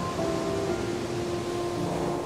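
Background music of long held tones over a steady wash of ocean surf.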